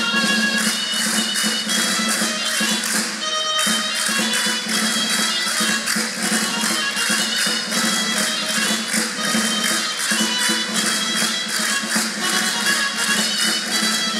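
Spanish regional folk dance music played live, a melody over a fast, steady percussive beat.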